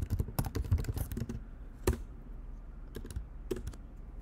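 Typing on a computer keyboard: a quick run of keystrokes for about a second and a half, one louder key press about two seconds in, then a few scattered clicks.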